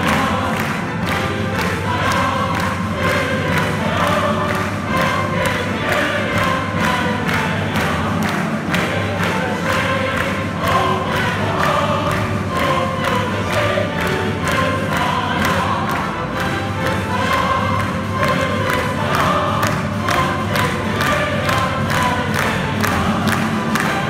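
Operatic soloists singing with a symphony orchestra and choir in a lively piece, while the audience claps along in a steady beat.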